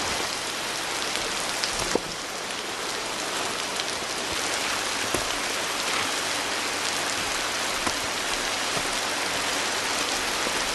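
Steady rain falling, with a few sharper knocks, the loudest about two seconds in.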